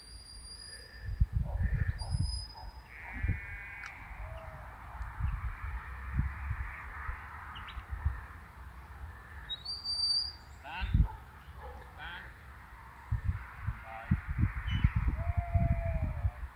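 Shepherd's whistle commands to a working sheepdog: a short, flat, high note right at the start and again about two seconds in, then a note that rises and holds about ten seconds in. Wind rumbles on the microphone in gusts in between.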